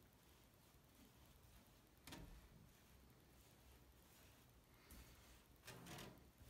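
Near silence, with two faint, brief rustles, about two seconds in and near the end, of a hand peeling lint off a dryer's mesh lint screen.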